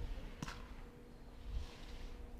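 Faint course sound of a sit-ski's edges scraping over snow, a soft hiss that swells near the end, under low wind rumble and a faint steady hum. A brief sharp knock sounds about half a second in.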